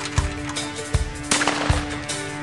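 A single shot from a Remington 11-87 20-gauge youth semi-automatic shotgun, about two-thirds of the way in, under country-rock music with a steady drum beat.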